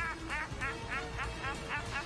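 Shrill, very high-pitched laughter from a man, a rapid run of arching 'ha' bursts at about four a second.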